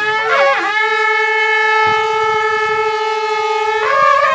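A long traditional brass horn of a Himachali folk band blown in one long, loud held note. It swoops up into the note at the start and begins to slide down in pitch near the end.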